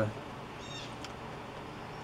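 Quiet background with a steady low hiss, two faint brief high chirps and a single small click about a second in.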